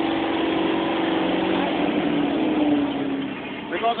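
A motor vehicle's engine running steadily, its pitch easing slightly lower in the second half before it fades near the end.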